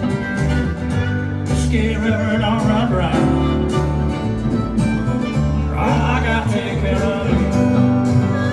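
Live country band playing an instrumental passage between sung lines: upright bass and acoustic guitars keep a steady beat, with a wavering lead melody over the top, heard from the audience.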